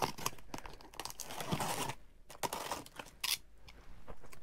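Packing tape on a cardboard shipping box being slit and torn open, with cardboard scraping and rustling; a steady run of tearing for about two seconds, then scattered clicks and a short sharp rip near the end.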